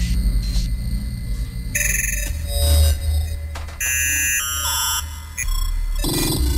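Live electronic music played on a pad controller and synthesizer: a low bass drone under short blocks of high, beeping synth tones that step down in pitch in the second half.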